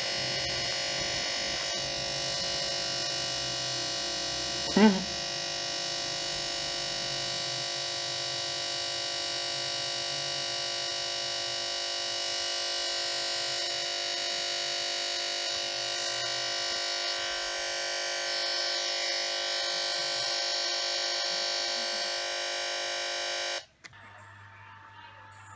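Steady electronic buzz from the crashed laptop's speakers: the audio stuck repeating a tiny loop, as happens when Windows halts on a blue screen. It holds without change and cuts off abruptly near the end, with a brief voice sound about five seconds in.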